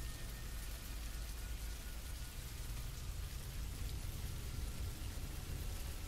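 Steady, quiet rain-like hiss with a low rumble underneath: an ambient background bed of rain and a dark drone.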